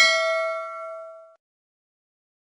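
A single bright, bell-like metallic ding that rings with several tones and fades away over about a second and a half.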